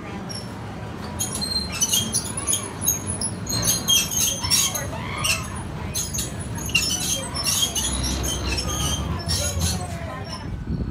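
Small ride train's cars rolling past slowly on narrow curved track: a low running rumble with many short, sharp wheel squeaks and clicks.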